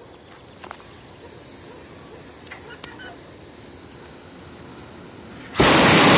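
Hot air balloon's propane burner firing: after several seconds of near-calm with a few faint distant sounds, a loud steady roar starts suddenly near the end.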